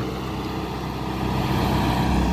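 Diesel engine of a John Deere tractor-based sugarcane grab loader running steadily as the machine drives off along a dirt track.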